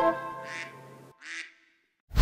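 Background music's last held notes fade and stop about a second in. Then comes a single short duck quack.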